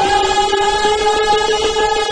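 Two kirtan singers hold one long sung note together over harmonium accompaniment, forming a steady, sustained chord.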